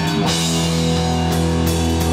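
A rock band playing live: distorted electric guitar through Marshall amps, electric bass and a drum kit with crashing cymbals, all sustained and loud.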